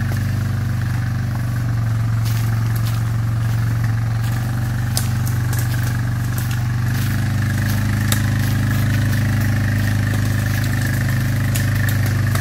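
Quad bike engine running steadily at low revs, its note shifting slightly about seven seconds in, with a few light clicks over it.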